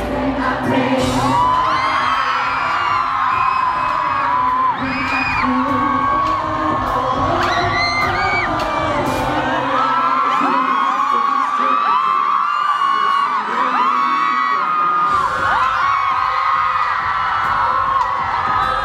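Live synth-pop band music at a concert, with audience members screaming and whooping over it, many short shrieks overlapping. About ten seconds in, the bass drops out for around five seconds and then comes back.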